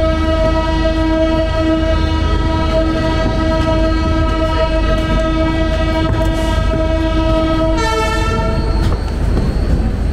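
Indian Railways train horn sounding in one long steady blast as the train pulls out of the station. A second horn tone joins about 8 seconds in, and both cut off together about a second later. The low rumble of the moving train runs underneath.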